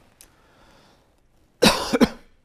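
A person coughing twice in quick succession near the end, loud and close to the microphone.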